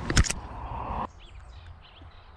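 Knocks and rustling from a handheld camera being handled against a jacket, over a steady rushing background. About a second in this cuts off abruptly to a quieter background with faint bird chirps.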